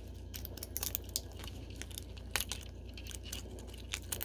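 Dry pine cone scales cracking and snapping as they are pulled off the cone with needle-nose pliers: an irregular scatter of sharp crackles and crunches.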